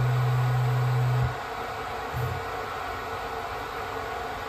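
Milo v1.5 mini CNC mill's stepper-driven axes moving the table into position for touch probing: a steady low hum that cuts off suddenly about a third of the way in, then a brief second move about two seconds in.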